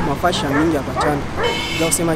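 A person's voice talking, with a short high-pitched cry or squeal about one and a half seconds in.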